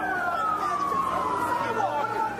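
A siren wailing: its pitch peaks right at the start and then falls slowly and steadily, with voices talking underneath.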